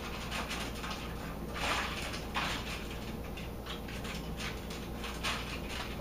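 Hands rolling and pressing a ground-pork loaf in aluminium foil: soft rustling and crinkling of the foil, with a few breaths about one and a half to two and a half seconds in, over a steady low hum.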